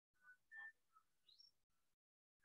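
Faint bird chirps: a few short, high notes and one quick rising whistle about a second and a half in.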